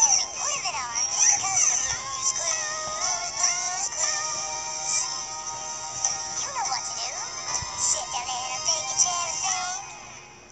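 A high-pitched singing voice with an electronic, synthetic sound, sliding up and down between a few held notes.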